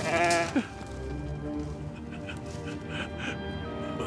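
A ram bleats once, a loud wavering cry that drops in pitch as it ends, over sustained background music.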